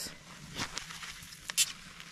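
Hatchet splitting kindling: a few short, sharp knocks of the blade striking wood, the loudest about a second and a half in.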